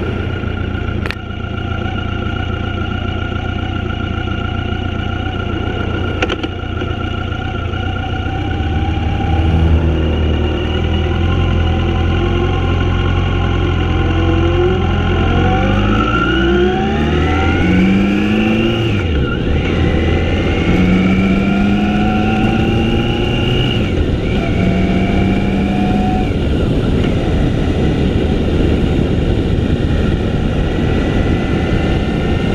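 Motorcycle engine running over steady wind and road noise on the moving bike; from about halfway through, the engine pitch rises in several steps, each dropping back before rising again, as it accelerates through the gears.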